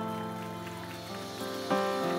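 Soft background music of sustained, held chords, moving to a new chord near the end.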